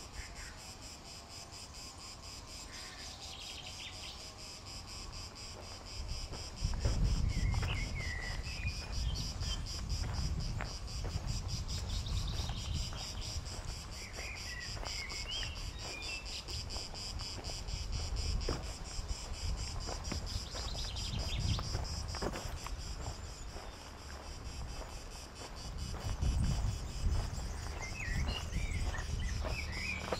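Steady pulsing chorus of cicadas in the pines, with a few short bird chirps and footsteps on a dirt path. Wind rumbles on the microphone from a few seconds in.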